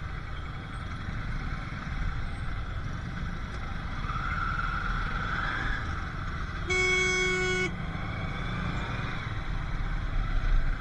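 Street traffic in a jam, with motorcycle and auto-rickshaw engines running at low speed. About two-thirds of the way in, a single vehicle horn sounds one steady note for about a second, the loudest sound.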